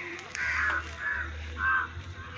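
A bird calling outdoors: three short calls a little over half a second apart, over a low steady hum.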